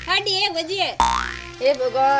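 A cartoon-style rising 'boing' comedy sound effect, starting suddenly about a second in after a similar one just before, with a voice between and after.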